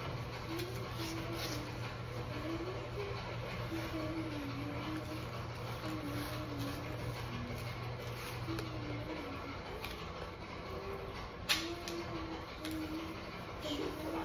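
A quiet single-line tune, its notes wandering up and down, over a steady low hum that stops about two thirds of the way through. One sharp click comes near the end.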